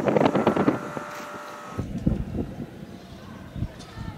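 A loud, crackly burst with a steady whistling tone lasting under two seconds, then an abrupt switch to a low rumble from an armoured police vehicle's engine, with wind buffeting the microphone.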